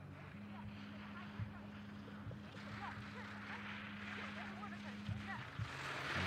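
Skis hissing and scraping on hard-packed snow as a skier and guide carve giant slalom turns, the hiss growing toward the end. A steady low hum runs underneath until about five seconds in.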